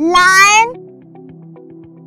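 A single loud cry lasting under a second right at the start, rising steadily in pitch, over background music of short repeated notes.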